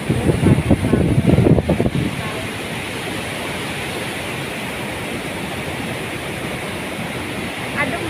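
Floodwater rushing over a weir, a steady even roar of water. In the first two seconds, low buffets of wind hit the microphone.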